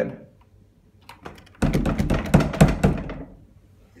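A locked apartment door and its lock being worked and rattled against the frame: a few clicks, then a burst of rapid knocking and clattering lasting about a second and a half. The lock will not release, so the door stays shut.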